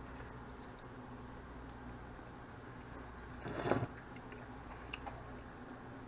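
Faint chewing of a mouthful of cornbread over a steady low hum, with one short louder sound a little past halfway and a few faint ticks near the end.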